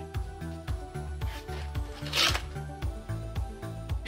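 Background music with a pulsing bass line, under the rustle of a cardboard box sliding out of its sleeve, loudest about two seconds in.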